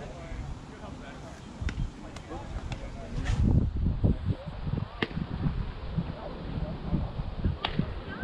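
Outdoor ballfield sound of distant players' voices, with low rumbling gusts on the microphone and a few sharp clicks, the loudest a crack just after three seconds.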